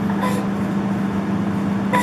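A steady low hum over faint hiss, unchanging throughout: constant background noise of a room, from some appliance or electrical source.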